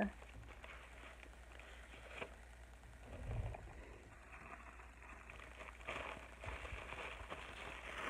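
Faint rustling and crinkling of bubble wrap and a paper envelope being handled, with a soft thump a little after three seconds.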